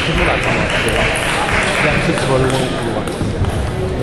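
Close rustle of a cloth towel rubbing across a face during the first couple of seconds, over a babble of voices in a large hall with scattered table tennis ball bounces.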